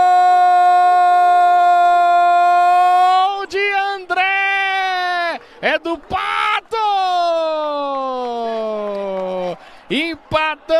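Brazilian TV sports commentator's drawn-out goal cry of "gol" in Portuguese: one long held note for about three seconds, then a few broken shouts, then a long yell sliding down in pitch that ends shortly before the close.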